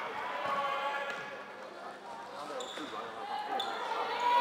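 Floorball game sounds: players and bench calling out over the play, knocks of sticks and ball, and two short squeaks of shoes on the court floor about two and a half and three and a half seconds in.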